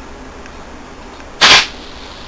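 A single sharp crack about one and a half seconds in, from high voltage arcing over at the end of an RF welder transformer's secondary winding, the sign of a burnt, shorted secondary. A steady low hum runs underneath.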